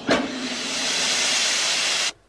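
Laundry steam press letting off a loud, steady hiss of steam that starts sharply and cuts off abruptly.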